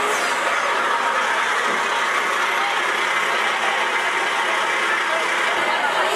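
ERF lorry's diesel engine running as it hauls a fairground load slowly past at close range, under the steady chatter of a crowd of onlookers.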